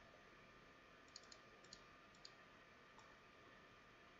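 Near silence: room tone with a few faint computer mouse clicks, a small cluster between about one and two and a half seconds in and one more near three seconds.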